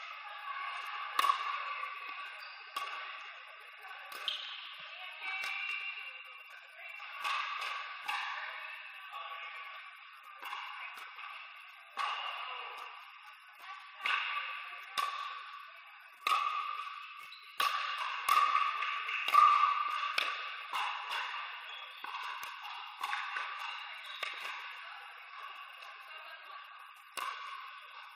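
Pickleball paddles striking a hard plastic ball during rallies: sharp pops at irregular intervals, roughly a second or two apart, each ringing on in the echo of a large indoor hall.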